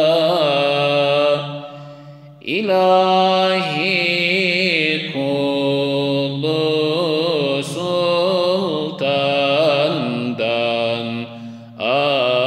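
A male voice singing a Turkish ilahi in makam Hüzzam without instruments, in long held notes with melismatic ornaments over a steady low drone. The line breaks off briefly about two seconds in and again near the end, and each time a new phrase begins.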